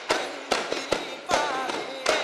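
A group of daf frame drums struck together in unison, sharp strokes about two to three a second, with a chanting voice between the strokes.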